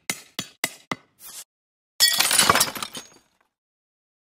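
Intro sound effects: a quick run of about five sharp taps, then a loud glass-shattering crash about two seconds in that rings out and dies away over about a second.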